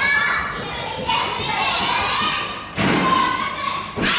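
Children's voices chattering and calling in a large gymnasium hall, with one dull thump about three-quarters of the way through.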